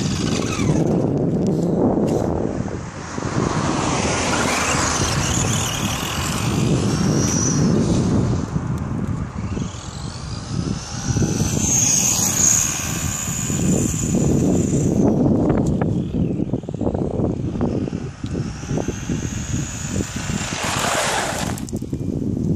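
Traxxas Rustler RC truck's electric motor and gearbox whining, the high pitch rising and falling with the throttle as the truck drives off and comes back, over a steady rushing noise. It is loudest with the truck close by at the start and near the end, and the owner thinks its gearbox needs replacing.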